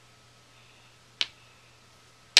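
Quiet room tone with a faint steady hum, broken by one short, sharp click a little past a second in.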